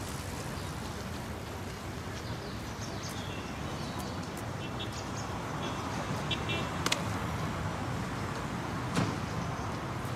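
City street ambience: a steady hum of traffic, with a few short high chirps in the middle and two sharp clicks in the second half.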